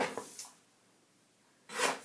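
A click and a short rustle, like paper or card being handled, then a quiet second, then another short rustling sound near the end.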